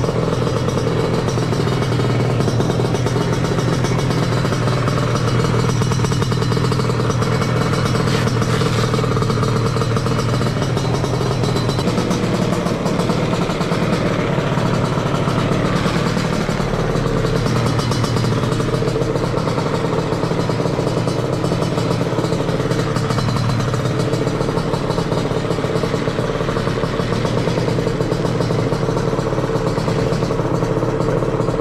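Small two-stroke scooter engine idling steadily at an even pitch.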